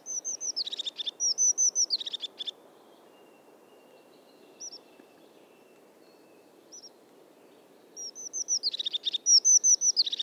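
Crested tit calling: quick runs of high-pitched, squeaky, downward-slurred notes, one run in the first couple of seconds and another near the end, with a few single notes between, over a faint steady background noise.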